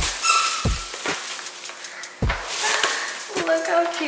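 Plastic bag crinkling as a boxed cake is pulled out of it, over background music with deep bass thumps.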